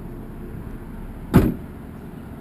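Cadillac CTS trunk lid shut once with a single solid thud about a second and a half in.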